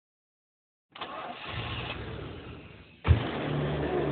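A motor vehicle's engine running, cutting in after about a second of silence. Just after three seconds it is cut off by a sudden loud jolt, and a louder steady running sound follows.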